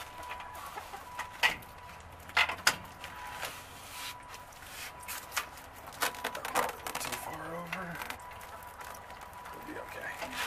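Hens clucking while sticky insulation wrap is stretched around a metal roost pole, giving a run of sharp crackles, the loudest about one and a half and two and a half seconds in.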